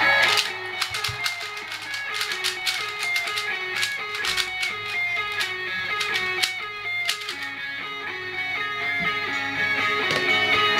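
Guitar music playing through laptop speakers: picked notes in a repeating melody, with sharp clicks scattered over it.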